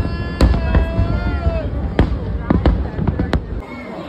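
Fireworks going off overhead in a string of sharp bangs over a low rumble, with a long high-pitched whoop over the first second and a half; the bangs and rumble die down near the end.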